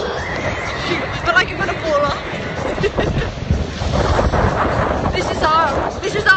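Wind rushing on the microphone on a moving sailboat, with short high-pitched wavering vocal exclamations a few times, clustered near the end.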